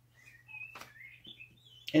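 Faint chirping of a bird: a few short, wavering high calls, with a single click just under a second in.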